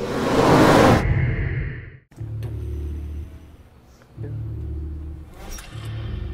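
A loud whoosh sound effect closes a channel logo intro, swelling and fading out about two seconds in. After a sudden cut, a film trailer's sound design brings two swells of low rumbling drone.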